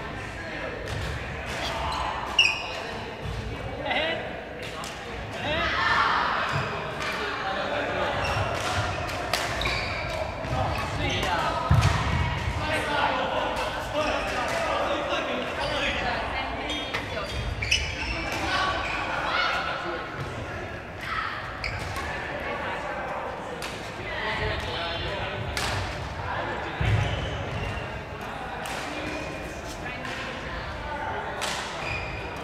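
Badminton rackets striking shuttlecocks, many sharp cracks at irregular intervals from several courts at once, over the talk and calls of players in a large sports hall.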